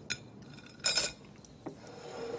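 A few light clinks of cutlery and glass against dishes, the loudest about a second in.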